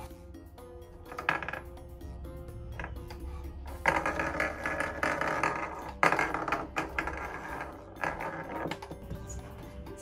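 Light background music, under rustling and plastic handling noise with a few small clicks as sewing thread is wound around a plastic organizer tray.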